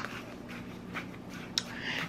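Spoon stirring a dry mix of brown sugar and Cajun seasoning in a small bowl: a few faint scrapes and light clicks over a low steady hum.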